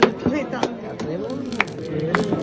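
Flamenco handclaps (palmas): about five sharp claps at an uneven beat, the first the loudest, over a background of voices.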